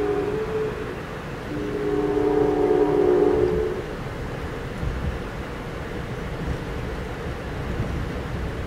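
Horn of the P42DC diesel locomotive hauling the train, a chord of several tones: one short blast, then a longer one starting about a second and a half in, sounded for a road grade crossing. Heard from inside the coach over the steady rumble of the train running on the rails.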